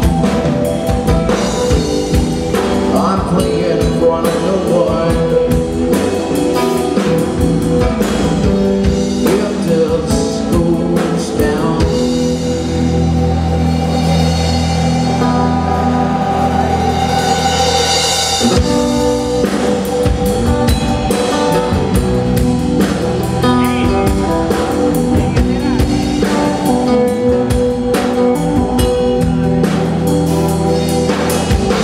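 Live blues band playing: electric guitar, keyboard, bass and drum kit. About twelve seconds in, the band holds a long sustained chord with the drums dropping back, and the full beat returns some six seconds later.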